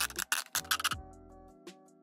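Soft background music with steady held notes, fading low near the end. In the first second, sharp crackling clicks of a thin plastic water bottle being cut through with a blade.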